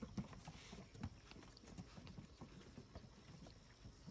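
Faint, irregular small clicks and taps of raccoons eating bread and moving about on wooden deck boards.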